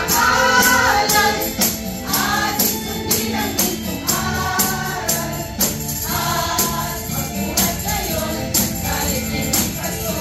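A group of adults singing a Christmas carol together, with a tambourine struck on the beat about twice a second.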